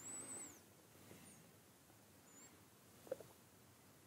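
Near silence: room tone between sentences of a talk, with a faint high squeak that rises and falls at the very start and a brief faint sound about three seconds in.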